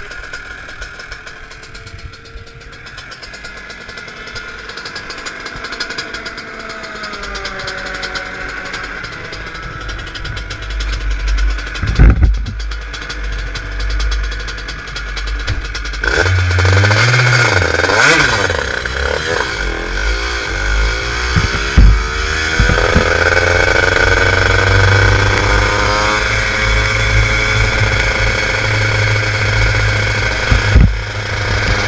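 Honda CR125 two-stroke shifter kart engine, heard onboard: fainter engine sound for the first half, a sharp knock about twelve seconds in, then from about halfway the engine runs loud, revving up and down before pulling away and running under acceleration near the end.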